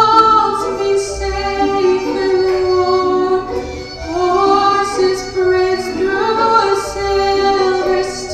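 Woman singing a slow ballad live into a handheld microphone, in long held notes that glide from one pitch to the next.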